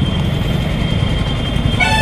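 Motorcycle riding noise on a busy street: steady engine and wind rumble. A vehicle horn sounds briefly near the end.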